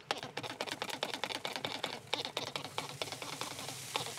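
Ribs being spritzed with a spray bottle on a hot smoker grate: dense, irregular crackling and sizzling with faint hissing.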